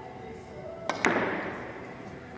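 Three-cushion carom billiard shot: two sharp clicks about a sixth of a second apart, the cue tip striking the cue ball and then ball striking ball. The second click is louder and trails off in a short echo.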